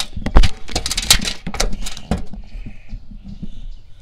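Handling noise from a phone camera being set down and repositioned on the pier deck: a run of knocks, taps and rubbing, the loudest knock about half a second in.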